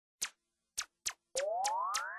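Produced sound effects opening a rap track: three sharp clicks, then from about two-thirds of the way in a cluster of several tones sliding steadily upward, with more clicks on top about three times a second.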